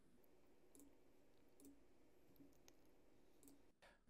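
Near silence: faint room tone with a few soft computer-mouse clicks spread through it.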